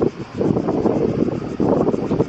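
Wind buffeting the camera's microphone: a loud, uneven low noise that dips briefly near the start.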